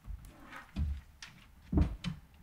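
Three dull knocks and thumps at the lectern, picked up by its microphone, about a second apart, the last one the loudest.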